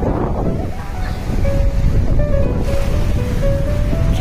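Sea surf washing in over shallow water, with wind buffeting the microphone, under background music: a simple melody of held notes stepping from one pitch to the next.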